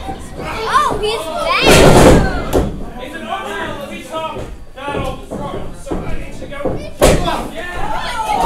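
Heavy impacts of wrestlers hitting the mat of a wrestling ring: a loud slam about two seconds in, then a sharper single impact near the end. Audience voices and shouts run underneath.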